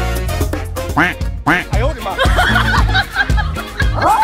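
Comedic background music with a repeating bass line and short sliding, cartoon-like pitch glides.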